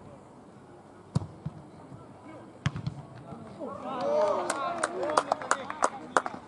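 A football kicked with a sharp thump about a second in, then a second thump a moment later. From about four seconds on, several players shout over one another, with sharp hand claps.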